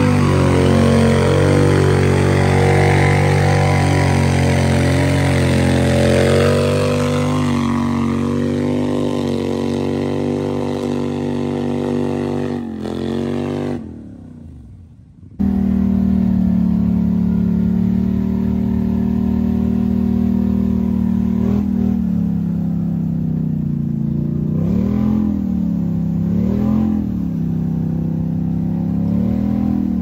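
Polaris Sportsman 850 ATV's twin-cylinder engine held at high revs as it ploughs through a deep mud hole, the pitch sagging slowly as it bogs down. After a short dip about halfway, the engine keeps running at steady high revs with a few rev-ups and drops while the ATV sits stuck in the mud.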